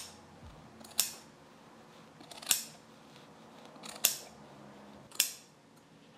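Scissors snipping tufted yarn pile, four sharp cuts about a second and a half apart, trimming stray loops on a tufted pillow.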